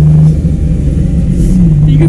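Daihatsu Hijet microvan engine droning steadily on the move over low road rumble, its pitch wavering briefly early on and rising slightly near the end.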